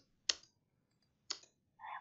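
Two computer mouse clicks about a second apart.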